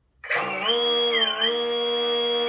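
DPower AL3548-4 brushless outrunner motor of an RC model boat starting suddenly about a quarter second in and spinning the propeller in air, with a steady electric whine that climbs a little at first and then holds its pitch.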